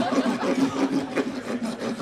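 Equine dental rasp grinding across a horse's teeth in a steady scraping rub, levelling off the teeth.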